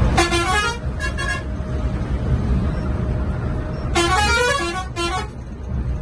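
Bus multi-tone air horn: two short blasts right at the start, then a longer blast about four seconds in that steps between pitches, over the steady low rumble of the coach's engine and tyres. The horn sounds as the Volvo B11R coach overtakes another bus.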